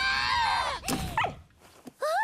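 A dog in the anime's soundtrack gives a long high-pitched cry, then a shorter rising cry about a second in, dying away soon after.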